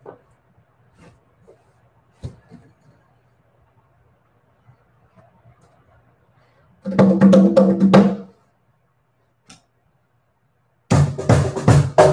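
Hand drumming in two short flurries of quick strikes, one about seven seconds in and one near the end; the last is a cajón box drum played with the hands while sitting on it, a sound check.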